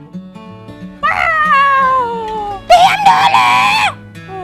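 Soft background music with low plucked notes, then about a second in a high-pitched voice lets out a long wail that slides down in pitch, followed near the end by a louder, strained scream lasting about a second.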